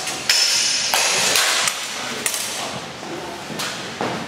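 Metal practice sword blades clashing several times in sparring, the first strike about a third of a second in ringing clearly for about half a second.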